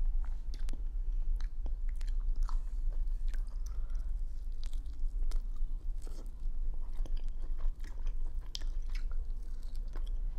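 Close-up chewing and biting into a chicken wing, picked up by a clip-on microphone: many short, irregular mouth clicks and smacks over a steady low hum.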